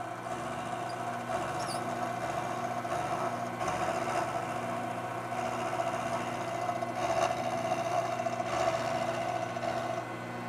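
Milling machine with an end mill cutting along the side of a metal plate: the spindle runs with a steady whine and hum under the noise of the cut, swelling slightly a few times as the cutter feeds along.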